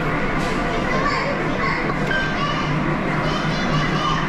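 Busy game-arcade din at a steady level: overlapping electronic music and jingles from the machines mixed with people's and children's voices.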